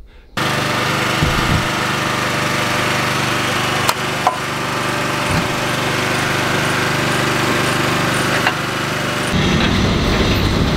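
Heavy diesel engine idling steadily, with a couple of sharp metal clanks about four seconds in. Near the end a louder, lower engine sound from the semi truck and lowboy trailer takes over.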